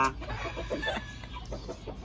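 Chickens clucking, a few short scattered clucks.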